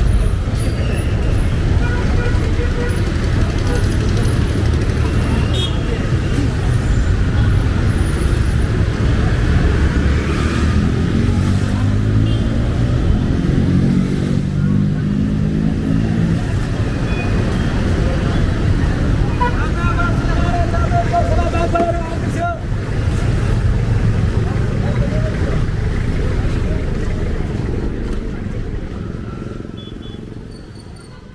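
City street traffic: car and motorcycle engines passing close, with the chatter of passers-by. One engine climbs in pitch as it passes near the middle, and a short horn-like tone sounds about two-thirds through, before everything fades out near the end.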